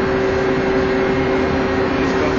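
A large multi-cylinder marine diesel engine running in a ship's engine room: a loud, steady machinery noise with a constant hum held on one pitch.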